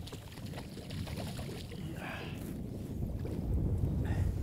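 Wind rumbling on the microphone and water lapping at the side of a small fishing boat on choppy water, growing louder in the second half.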